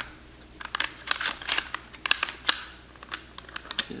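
Light metallic clicks and taps of a Mossberg 500 shotgun's bolt and carrier being worked into the receiver by hand, a quick irregular cluster through the middle and a couple more near the end.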